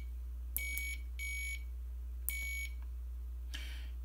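Piezo buzzer on a microcontroller board giving three short, high electronic beeps: two in quick succession about half a second in, and a third a little after two seconds. The beep count signals which key of the analog keyboard was pressed. A steady low hum runs underneath.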